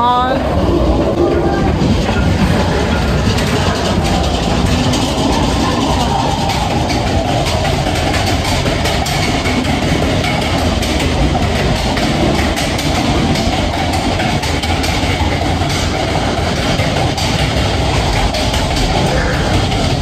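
Matterhorn Bobsleds coaster sled running along its tubular steel track, a steady loud rumble and clatter of wheels on rail.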